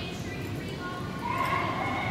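A girl's high-pitched shout across a soccer pitch, held for about a second and starting past halfway, over the steady rumble of a large echoing indoor hall.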